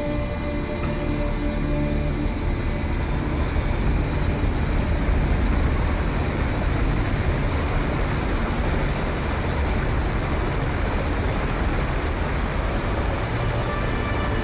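Film soundtrack: a steady, loud, deep rumble of sound design under the wide shots, swelling slightly about five seconds in. Faint musical tones come back in near the end.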